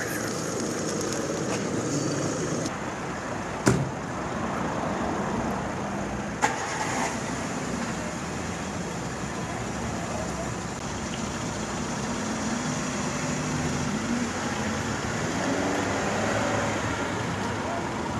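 Steady street background of motor-vehicle noise with indistinct voices, and two short knocks about four and six and a half seconds in.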